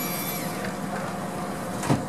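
A loaded ambulance stretcher is rolled into the back of an ambulance. It rubs and rattles over a steady idling engine hum, and there is one loud clunk near the end as it goes in.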